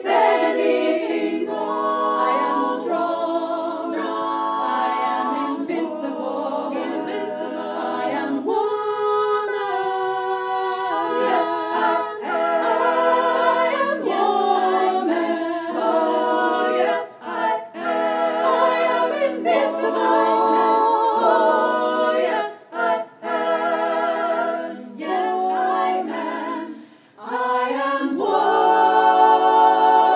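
Women's choir singing a cappella in close harmony, held chords with vibrato, broken by a few short pauses between phrases.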